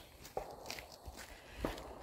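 A few soft footsteps on a dirt trail, with a low rumble from the phone being handled while walking.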